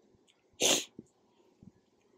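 A single short sneeze a little over half a second in, followed by a faint click of wood about a second in.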